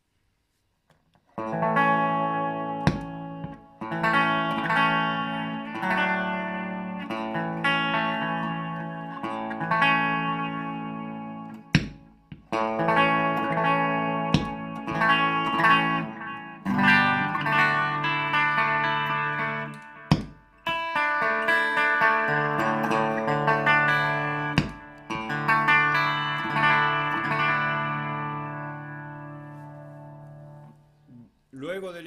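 Electric guitar (a Gibson Les Paul Studio) playing a run of ringing chords through the Bassman channel of a Fender Super-Sonic 60 amp into a 2x12 cabinet, with a Carl Martin Contour & Boost equalizer pedal switched in; the chords start about a second and a half in. A few sharp pops cut across the playing, the Contour & Boost footswitch making a discharge when pressed.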